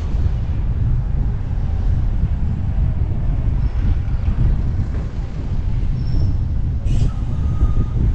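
Wind rumbling on the camera microphone of a moving bicycle, mixed with the steady roar of city traffic. About seven seconds in comes a short sharp click followed by a brief high ringing tone.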